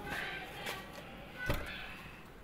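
Faint hushed voices, with a single sharp knock or click about one and a half seconds in.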